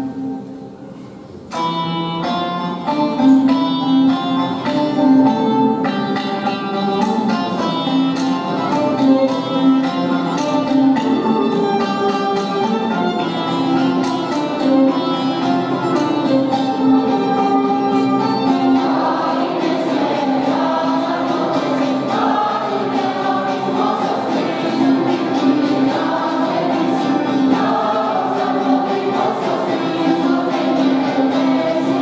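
Mixed choir singing a Greek Christmas carol with instrumental accompaniment, starting about a second and a half in after a brief pause.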